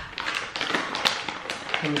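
A plastic snack pouch being pulled open and handled, its packaging crinkling in a quick run of sharp crackles and clicks.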